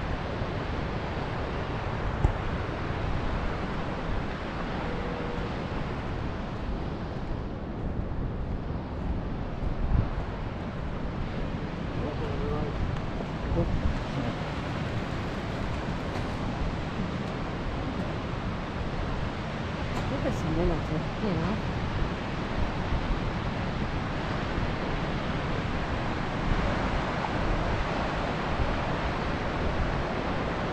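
Wind buffeting the microphone over a steady wash of ocean surf, with a couple of brief thumps.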